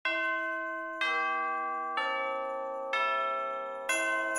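Bell chimes in the opening music, struck about once a second, four times. Each strike rings on and fades, and the notes change from one strike to the next.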